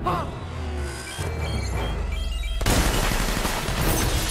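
Film score playing; about two-thirds of the way in, a sudden loud burst of gunfire and shattering glass breaks in over it and carries on.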